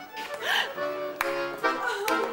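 Accordion starting to play, with held chords that change a couple of times, beginning about a second in.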